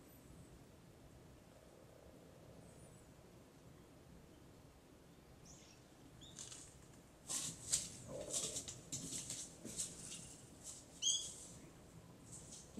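Faint steady outdoor background, then birds chirping from about halfway, with a quick flurry of sharp high chirps and a couple of louder calls near the end.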